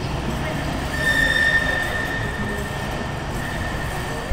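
Bombardier M5000 tram moving past along the platform, its continuous running noise joined about a second in by a steady high-pitched wheel squeal that lasts almost to the end.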